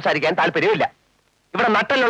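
Speech only: film dialogue, broken by a brief pause about a second in.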